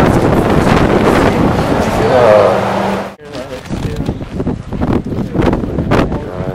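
Wind buffeting the microphone, loud and rumbling for about three seconds, then cut off abruptly and followed by lighter, gusting wind noise.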